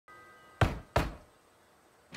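Two knocks on a door, a third of a second apart.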